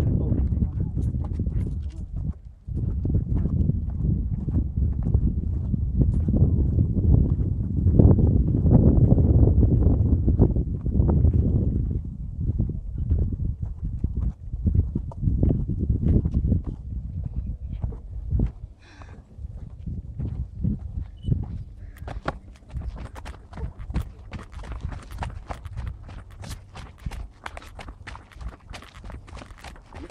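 Running footsteps coming down wooden railway ties in quick, irregular thuds. A loud low rumble covers the first dozen seconds. From about two-thirds of the way in, the steps come through as quick, sharp clatters.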